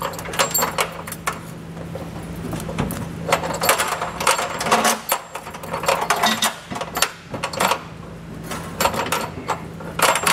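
Small metallic clinks and rattles of steel fish wires and bolt hardware against the vehicle's frame rail and a steel trailer hitch as the hitch is raised and the wires are drawn tight. They come in several short clusters over a steady low hum.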